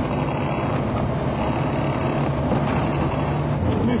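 Moskvitch Aleko's engine running steadily under way, heard from inside the cabin with road and wind noise; the engine note shifts slightly near the end.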